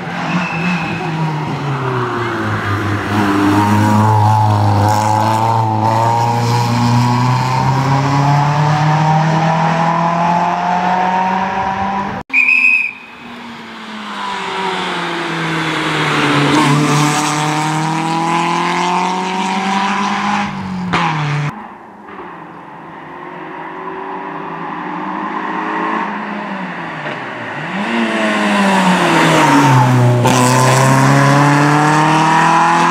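Peugeot 106 rally car's engine revving hard on a tarmac stage, its pitch climbing and falling again and again as it accelerates and changes gear. The sound breaks off suddenly about twelve seconds in, then resumes with the car coming up and passing close.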